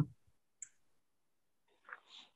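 Near silence on a call, broken by a faint short click about half a second in and another near the end.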